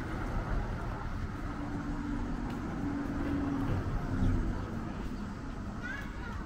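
A car driving slowly past on a narrow cobbled street, its engine humming low and steady, loudest a couple of seconds in and fading toward the end.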